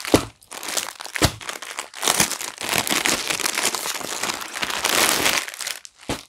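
Clear plastic packaging crinkling and rustling as a folded suit is pulled out of it by hand, with a few sharp crackles near the start and denser crinkling through the rest.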